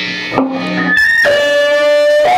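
An electric guitar plugged straight into a Sound City amp head at high volume rings on a held note. About a second in, a piercing squeal breaks out; it starts high, then drops to a lower steady tone. The guitar pickups are catching the magnetic field of the amp's vibrating output transformer, a magnetic feedback loop that is harmless.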